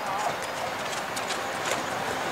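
Korail Class 351000 electric multiple unit drawing closer over the track points, its wheels clicking irregularly over rail joints and switch frogs and slowly getting louder.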